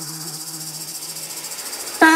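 A quiet passage in a downtempo electronic DJ mix: a fast, even, high-pitched chirring pulse over a held low tone that fades away.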